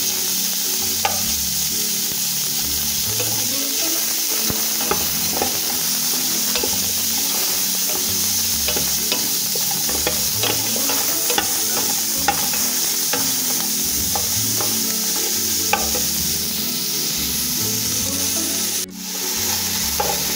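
Mutton frying with onion, garlic and ginger in hot oil in an aluminium pot: a steady sizzle, with a spatula scraping and clicking against the pot as it is stirred.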